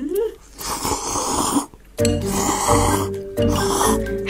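Background music, with a short rising "mmm" hum at the start followed by a noisy slurp of noodles. About halfway through, the music gets louder and fuller, with a bass line.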